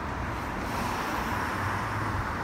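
Road traffic noise: a car driving past on the street, a steady rush of tyres and engine that swells slightly about half a second in.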